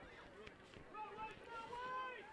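Faint, distant voices of players and spectators calling out across an outdoor soccer field, over a low background hum.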